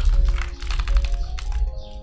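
Computer keyboard typing, a quick run of keystrokes that thins out near the end, over background music with steady held notes.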